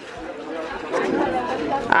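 Background chatter of several people talking at once, a mix of overlapping voices with no single one standing out, growing louder about a second in.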